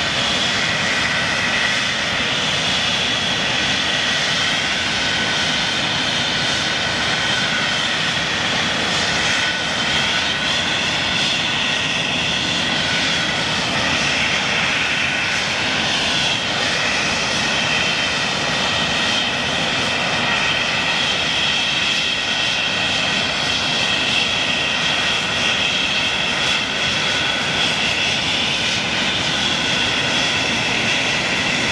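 English Electric Lightning's twin Rolls-Royce Avon turbojet engines running on the ground: loud, steady jet noise with several high whining tones that drift a little in pitch.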